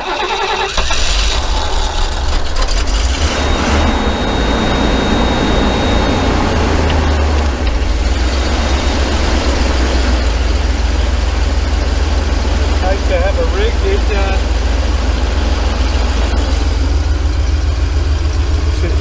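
Ford 351 (5.8 L) V8 engine of an Econoline 250 camper van starting up, catching within the first second and then running steadily, heavy in the low end.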